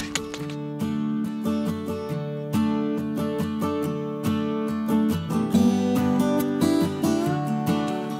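Background music: a strummed acoustic guitar playing steady chords.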